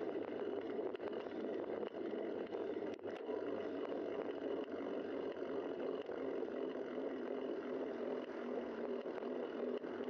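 Steady rushing noise of a bicycle ride on a road: wind buffeting a bike-mounted camera's microphone together with tyre noise on the asphalt.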